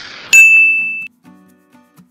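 Logo-reveal sound effect: the tail of a noisy whoosh, then a single loud, bright metallic ding about a third of a second in. The ding holds one high note and cuts off suddenly under a second later, leaving faint low musical notes.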